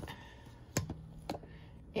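Metal spoon stirring dry flour in a plastic measuring cup, with a few light clicks as the spoon knocks against the cup.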